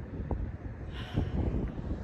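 Wind buffeting the microphone in uneven low rumbling gusts, stronger from about a second in.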